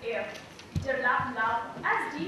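A woman speaking into a microphone.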